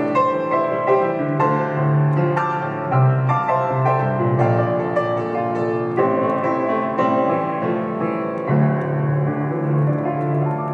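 Grand piano playing an instrumental passage of a slow song on its own, with flowing chords over sustained low bass notes.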